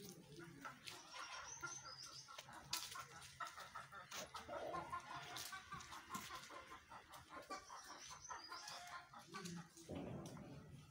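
Chickens clucking faintly, a scatter of short repeated calls.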